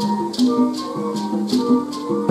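School concert band playing, the winds and brass holding sustained chords, with a rattling percussion stroke about twice a second.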